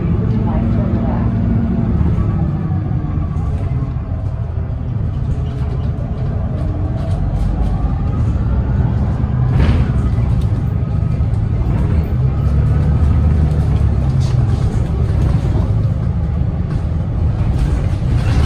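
Inside a moving 2010 Gillig Low Floor Hybrid bus: the low, steady rumble of its Cummins ISB6.7 diesel, with the whine of the Allison hybrid drive rising and falling in pitch as the bus gathers and sheds speed. A single sharp knock comes about ten seconds in.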